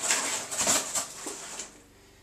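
Packing tape on a cardboard box being cut with a knife and the flaps torn open: rough scraping and tearing that stops a little before the end.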